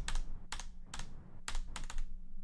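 A handful of sharp clicks or taps at uneven spacing, with a pair at the start and a quick cluster near the end.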